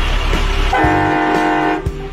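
A horn blast lasting about a second, several steady tones sounding together and cutting off abruptly, over background music.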